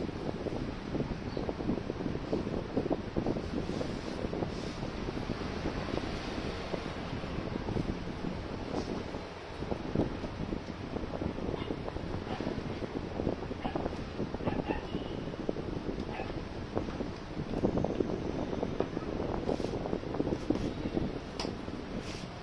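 Wind buffeting the microphone: a steady, fluctuating rumble and rustle. A few faint clicks come through in the second half, from hands handling wiring and a connector under an electric scooter's deck.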